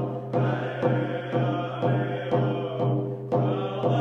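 Native American hand-drum song: several men singing together over a steady beat on a hide frame drum struck with a padded beater, a little under two strokes a second.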